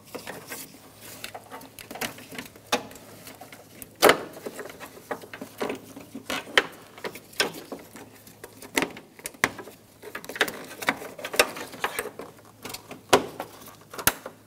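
Irregular clicks, taps and knocks of gloved hands working aluminum AC condenser lines out of their plastic mounts, with one sharper knock about four seconds in.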